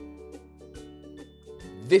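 Cheerful plucked ukulele background music with held notes over a steady low bass; a man's voice begins right at the end.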